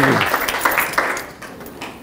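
Audience applause, a dense patter of hand claps that thins out and dies away a little over a second in.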